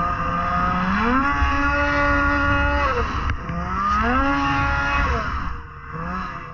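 Polaris IQR 600R snowmobile's two-stroke twin engine heard from on board while riding through snow. It revs up twice, each time holding the higher pitch for a second or two before easing off again.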